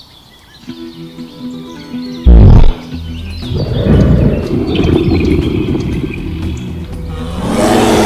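Background music with a loud low boom about two seconds in, followed by a long big-cat roar sound effect laid over the music.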